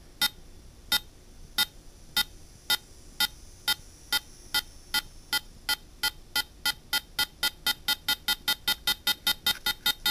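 A PICAXE-08M2 beep circuit sounds a train of short electronic beeps. Its rate knob is being turned, and the beeps speed up steadily from about one and a half a second to about four a second.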